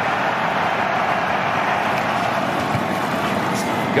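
Steady noise from a large football stadium crowd, an even wash of many voices with no single sound standing out, during a live play.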